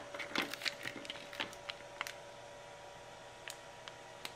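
Light clicks and taps of a swollen hard-case LiPo battery pack being pulled apart by hand, its plastic case handled and the foil-wrapped pouch cells lifted out. The clicks come thick in the first two seconds, with a couple more near the end.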